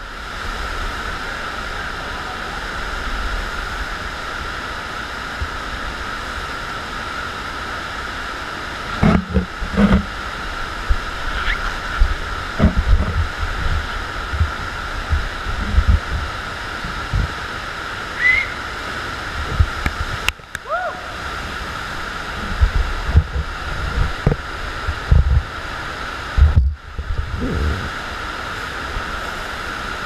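FlowRider surf machine's pumped sheet of water rushing steadily up the ride surface, a continuous hiss with a high hum running through it. From about nine seconds in, irregular low thumps and knocks break in.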